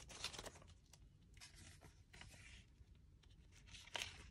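Faint rustling of paper banknotes being handled and a clear plastic cash-envelope pouch being opened, with a few small clicks and a sharper click near the end.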